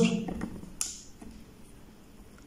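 A single light click from a laptop CPU socket as the processor is released and lifted out, about a second in.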